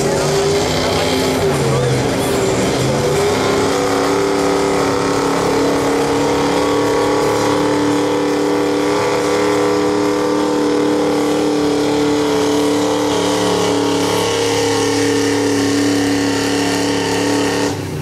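Gasoline V8 engine of a Chevrolet pickup at full throttle, pulling a weight-transfer sled. The revs climb a couple of seconds in, then hold at a steady high pitch.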